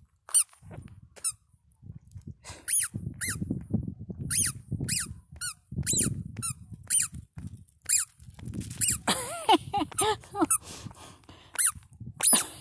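Rubber squeaky dog toy squeezed over and over, short high squeaks about two a second, with a few lower, longer squeaks near the end. Crunching on gravel runs underneath.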